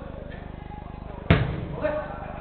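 A football kicked hard: one sharp thud about a second and a half in, echoing briefly around the hall, with players' voices calling around it.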